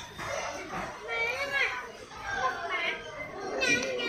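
A child's voice, speaking or vocalizing without clear words, with a brief higher-pitched sound near the end.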